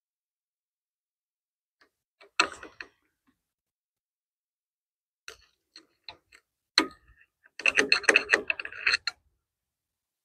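Sharp metallic clicks and clinks of hand tools being handled on a small engine: a single click about two seconds in, scattered light ticks, a knock, then a busy second and a half of rattling clinks near the end.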